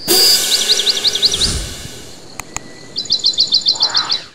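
Outro sound effects: a sudden loud whoosh, a quick run of high bird-like chirps, two sharp clicks as of a button being pressed, then a second faster run of about nine chirps.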